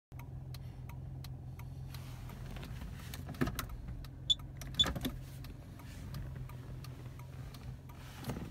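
Kia K5 idling, heard from inside the cabin as a steady low hum, with the hazard flasher relay ticking about three times a second. A few louder clicks and knocks come around the middle.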